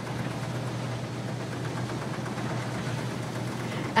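Combine harvester running steadily while harvesting soybeans: a constant low engine hum under an even rushing machine noise.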